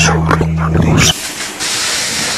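A steady low hum with short voice-like calls over it, which cuts off suddenly about a second in, leaving a steady hiss.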